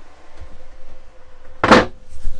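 Hinged wooden bench-seat lid over the battery and inverter compartment shut with a single loud thud near the end.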